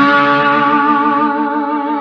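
Electric guitar through a Little Walter 59' tube amp and TS310 speaker cabinet: a sustained note rings on with vibrato, slowly fading.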